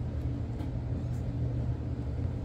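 Bengal cats purring: a steady low rumbling purr from the nursing mother and her kittens as they are handled.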